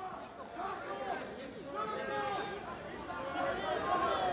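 Faint background chatter of several people talking at once, with no single voice standing out.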